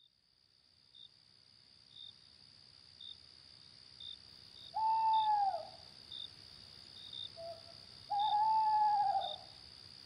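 Night ambience sound effect: an owl hooting twice, each hoot about a second long and falling in pitch at the end, over steady high-pitched cricket chirping with a chirp about once a second.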